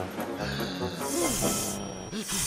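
Cartoon soundtrack: music with a loud high hissing burst starting about half a second in and lasting about a second, and short rising-and-falling vocal sounds from a character about a second in.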